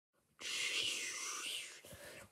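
A person's breathy whisper, about a second long, starting just after a brief silence and fading away.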